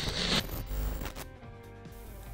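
Intro music from a glitch-style logo sting: a short crackling static burst at the start, then held musical tones that fade out within about a second.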